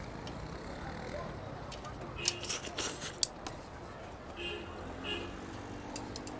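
Eating at a restaurant table: chopsticks and a metal bowl clicking and knocking several times in the middle, then two short ringing clinks of dishware near the end, over a steady room hum.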